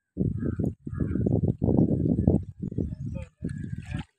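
Wind buffeting the microphone: an irregular low rumble that surges and drops out in uneven gusts.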